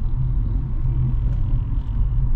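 Steady low rumble of a car driving, road and engine noise heard from inside the cabin.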